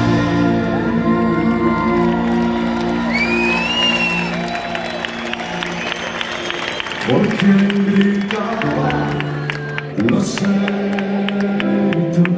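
A live rock band holds sustained chords, changing chord about seven and ten seconds in, while the crowd cheers, whistles and claps.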